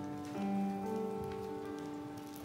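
Keyboard playing slow, held chords, the chord shifting about half a second in and again near one second.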